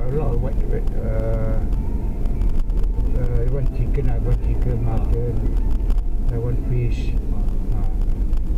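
Steady low drone of a moving car's engine and tyres heard inside the cabin, with a person's voice coming and going over it.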